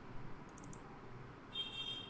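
Faint computer mouse clicks, a quick few about half a second in, as a file is selected and opened; near the end a faint high-pitched tone sounds briefly.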